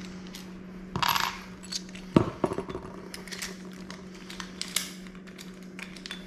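Small metal clicks and clinks of a Schlage tubular keyed knob set being handled and pulled off the door: a brief scraping rattle about a second in, a sharp click a little after two seconds, then several lighter clicks.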